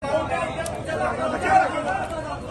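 Several voices talking over one another in a chatter.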